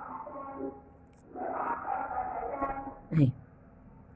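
Mostly speech: a voice in the background speaking in the first part and again over the middle, then a short spoken word near the end. No distinct sound from the bead threading stands out.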